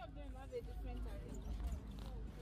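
Voices talking inside a minibus over a steady low vehicle rumble, with scattered light knocks and rattles.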